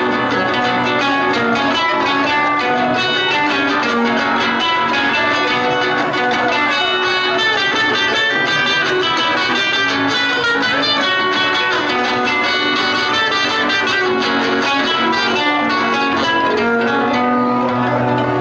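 Acoustic guitar playing a quick plucked melody, an instrumental break between sung verses.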